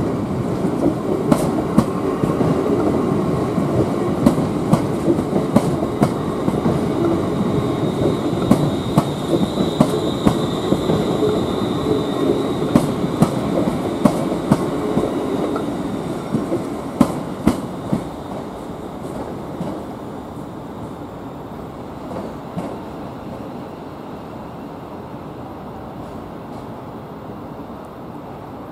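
A ScotRail electric multiple unit rolling slowly through the station throat, its wheels clicking sharply and irregularly over rail joints and points, with a faint high wheel squeal in the middle. The noise fades after about sixteen seconds, leaving a few last clicks.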